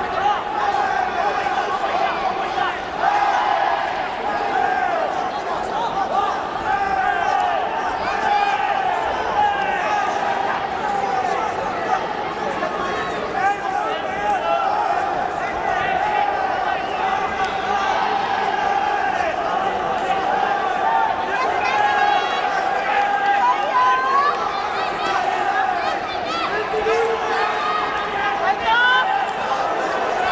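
Spectators and corner coaches in an arena shouting and calling out over one another, a steady din of many voices during a full-contact karate bout.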